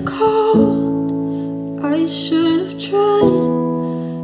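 A woman singing a slow, held melody over sustained piano chords, with new chords struck about half a second in and again a little after three seconds.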